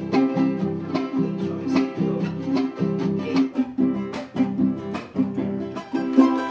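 Charango and acoustic guitar playing an instrumental folk passage together, with quick, even strummed chords.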